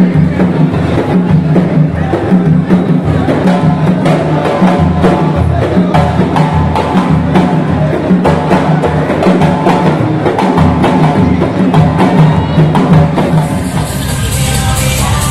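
Large hand-held frame drums beaten by a group of performers in a steady, driving rhythm.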